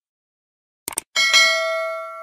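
A quick double mouse-click sound effect, then a bell ding a little over a second in that rings with several pitches and slowly fades: the stock sound of a subscribe-button click and notification-bell animation.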